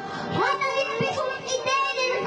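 A young girl singing into a microphone over music with a drum beat, its strokes a little over half a second apart.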